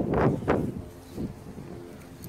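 Short gusts of wind noise and rustling on the phone's microphone in the first half second, then a quieter outdoor background.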